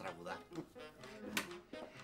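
Quiet voices, with a single sharp click a little after the middle.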